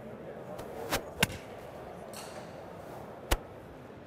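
A golf club being swung, with two sharp clicks about a second in and a louder single click past three seconds, over the faint steady hum of a large indoor hall.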